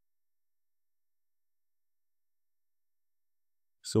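Dead silence, the sound track gated to nothing, until a man's voice starts speaking just before the end.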